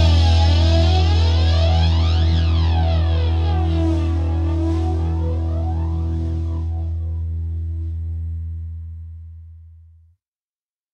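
The final distorted electric guitar chord of a punk rock song left ringing out, with a heavy steady low note and sweeping glides in its upper tones. It slowly fades, dying away fast near the end into silence.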